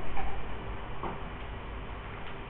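Classroom room tone: a steady low hum with faint ticks about once a second while students write.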